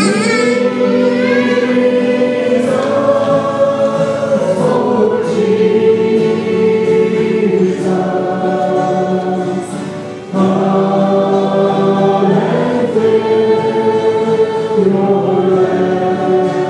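Women's voices singing a gospel-style worship song with long held notes, accompanied by acoustic guitar. A short break between phrases comes about ten seconds in before the singing resumes.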